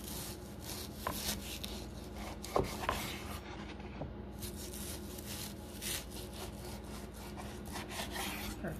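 A chef's knife sawing back and forth through a raw pork loin on a wooden cutting board, slicing thin cutlets. The blade rubs through the meat and catches on the board in a string of short, uneven strokes.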